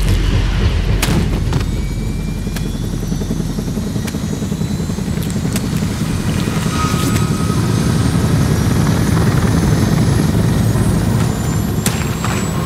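Helicopter rotors running: a loud, steady low rumble with a fast flutter, with a few sharp knocks scattered over it.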